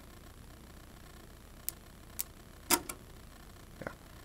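A few light, sharp clicks and taps over a faint steady hum: multimeter test probes being handled against a charge controller's terminal screws.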